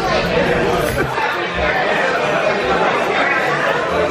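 Chatter of many voices in a busy restaurant dining room.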